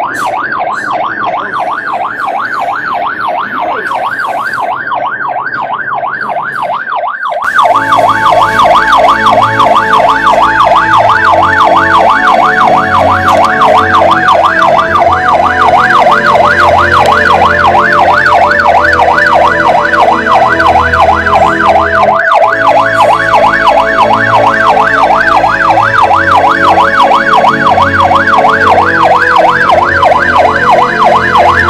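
Vehicle siren on a rapid yelp, its pitch sweeping up and down several times a second without a break. About seven seconds in, background music with a bass line comes in under it and the whole gets louder.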